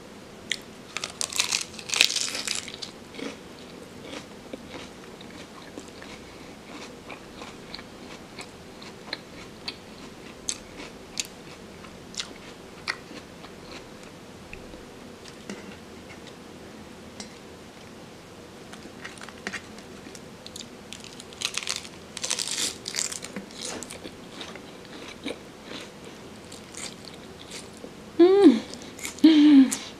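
Crunchy bites into crisp lettuce wraps filled with minced chicken, followed by chewing with scattered small crunches. A second run of loud crunching bites comes about twenty-two seconds in.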